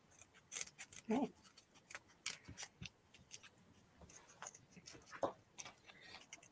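Scissors snipping through a folded wad of black paper to cut out a paper-lace design: faint, short, irregular snips.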